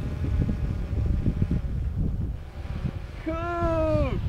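Gusty wind buffeting the microphone in uneven low rumbles. Near the end a person's voice holds one drawn-out call that slides down in pitch as it ends.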